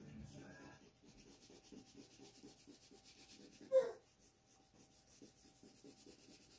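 Crayon rubbed back and forth on paper in quick, even strokes, a soft scratchy rhythm. About four seconds in there is a brief pitched vocal sound that glides up and down.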